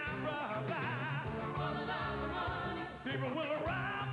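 Live band music with singers holding wavering, vibrato-laden notes over an electric bass line.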